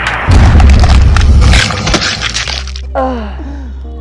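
A loud edited-in explosion sound effect: a sudden blast with a deep rumble and dense crackling, like breaking debris, dying away after about two and a half seconds.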